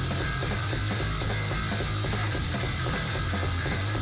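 Loud noise-rock recording by a Japanese all-female punk trio: a dense, fast rattling and clicking wall of noise over a steady low bass drone, unbroken for the whole stretch.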